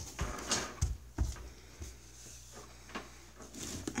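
A few soft thumps and clicks with faint rustling, the sounds of someone moving about and handling things, over a low background hum.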